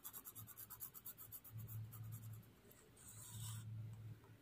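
Graphite pencil scratching faintly across a paper Zentangle tile in short repeated strokes, laying down shading.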